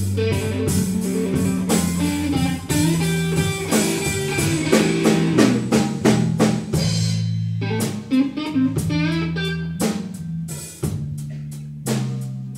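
Live slow blues band: a Stratocaster-style electric guitar plays bending blues lines over a drum kit and a steady bass line.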